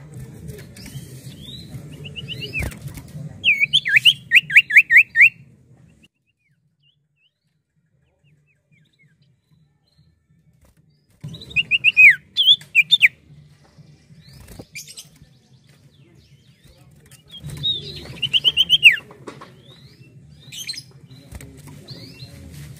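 A caged common iora (cipoh) singing loud, quick series of whistled notes that slur downward. There is a run of about six a few seconds in, another burst about halfway through, and another near the end, with several seconds of silence before the middle burst. Faint clicks and wing flutters come between the songs as it moves about the cage.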